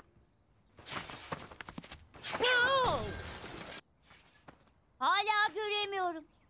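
Cartoon sound effects and voices: a noisy, clattering crash, with a loud wavering cry over its second half. A held yell follows near the end.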